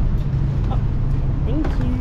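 Steady low rumble of a parking garage, with a brief bit of voice near the end.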